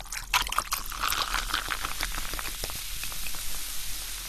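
Cola poured from a plastic bottle into a glass mug over ice, the splash of the pour mixed with a dense crackling fizz as the carbonated drink foams up.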